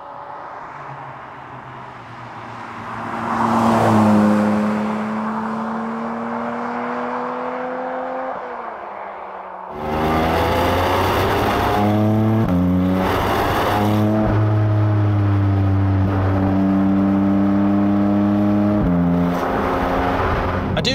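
Porsche 718 Cayman GT4 RS's 4.0-litre flat-six. The car approaches and passes by, loudest about four seconds in, and its pitch drops as it moves away. About ten seconds in the engine is heard up close from a camera mounted on the car's rear bodywork, pulling hard with its pitch stepping down and up at several gear changes.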